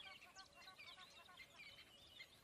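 Near silence with faint birds chirping, many short twittering calls in a soft background ambience.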